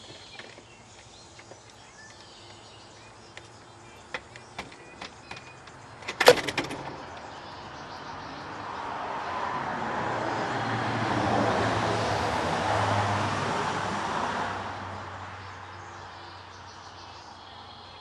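A vehicle passing by: a broad rushing noise that builds over a few seconds, is loudest in the middle, then fades away. A single sharp click comes just before it, about six seconds in.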